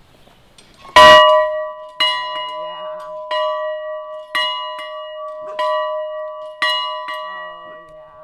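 A large swinging bell, rung by a pull rope, strikes six times at roughly one stroke a second, starting about a second in. The first stroke is the loudest, and each one rings on until the next.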